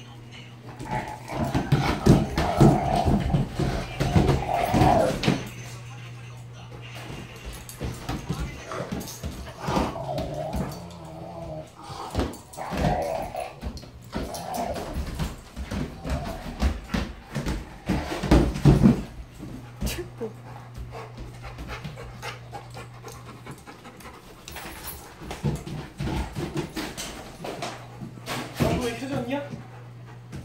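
Several dogs, among them a Rottweiler and an American Akita, playing together with repeated bouts of dog vocalizing and panting. The loudest bouts come in the first few seconds and again past the middle.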